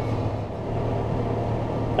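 John Deere tractor's diesel engine running steadily, heard from inside the cab as a constant low hum.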